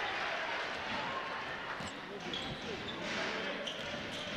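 A basketball being dribbled on a hardwood court over the steady background murmur of the gym.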